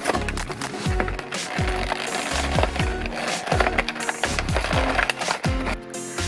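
Cardboard toy box and clear plastic packaging being pulled and torn open, with a run of crackles, cracks and rips. Background music with a steady low beat plays under it.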